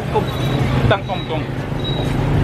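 Busy street traffic with motorbike engines running, a steady low hum under people's voices talking.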